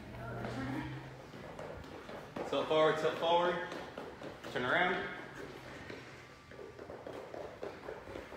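A voice speaking in two short phrases, quieter than the coaching around it, over faint footsteps of people moving side to side.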